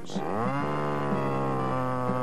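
Gasoline chainsaw revving up over about half a second, then holding steady at high speed.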